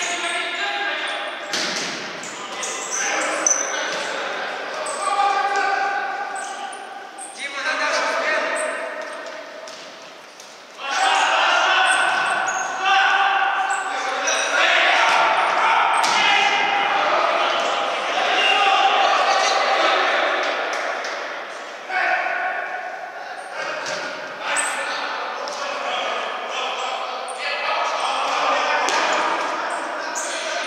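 A futsal ball being kicked and bouncing on a wooden sports-hall floor, echoing in the large hall, with men's voices calling and talking throughout, loudest in the middle stretch.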